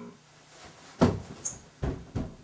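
Two dull knocks or thumps against a quiet room, one sharp one about a second in and another near the end.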